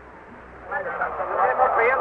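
A brief pause filled only with faint, steady background noise, then a man's voice begins speaking just under a second in.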